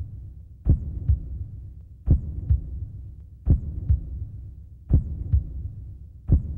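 Heartbeat sound effect: slow lub-dub double beats, four pairs about one and a half seconds apart.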